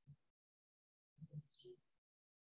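Near silence, with a few very faint, short low sounds a little past a second in.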